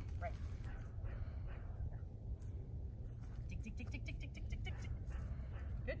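Steady low outdoor rumble, with a quick, evenly spaced run of short high chirps or clicks, about eight a second, lasting about a second, starting about three and a half seconds in.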